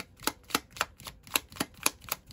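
A deck of tarot cards being shuffled by hand, the cards slapping together in short crisp snaps about four times a second.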